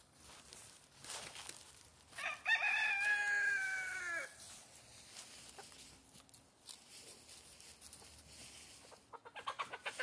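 A rooster crowing once: a single long crow a couple of seconds in, held steady and dropping a little in pitch at its end. Near the end, chickens cluck in a quick run of short calls.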